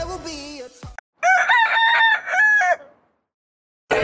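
A song fades out, then a rooster crows once, a call of several linked notes about a second and a half long. It sits between two stretches of total silence, cut in as an edited sound effect.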